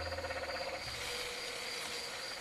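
Insects chirping steadily with a rapid pulsing trill and a constant high whine, with a low hum fading out about a second in.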